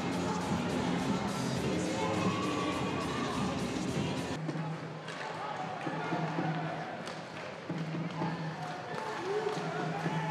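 Ice hockey rink ambience: crowd murmur and faint music, with scattered clacks of sticks and puck on the ice. The low background hum drops out about four seconds in.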